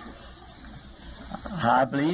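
Low, even background hiss, then a man starts speaking about one and a half seconds in.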